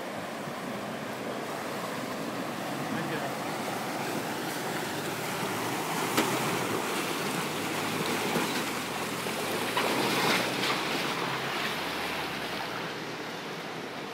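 River water rushing and splashing around a Toyota 4Runner as it fords the crossing, with a low engine hum under the noise in the second half. A single sharp knock about six seconds in, and the splashing grows louder around ten seconds as the truck passes close by.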